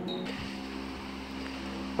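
Steady low electrical-mechanical hum with a faint fan-like hiss, holding level throughout.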